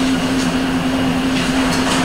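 A steady low hum, one unwavering tone held without a break, over faint background noise.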